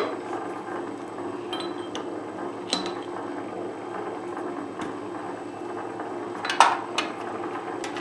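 Steel parts of a lathe's threading stop clicking and clinking as the stop rod is fitted on the carriage: a few light metallic clicks, the loudest a pair near the end. A steady low machine hum runs beneath.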